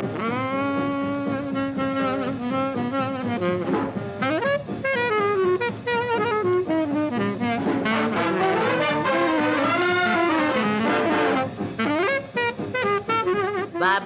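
Swing-era big-band jazz with a tenor saxophone solo over the band. It opens on a long held note with vibrato, then moves into bending, wavering phrases.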